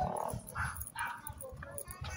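A dog giving a few short barks.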